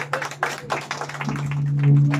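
A few people clapping hands, irregular claps for about the first second and a half, as a mariachi song ends, with a steady low hum beneath.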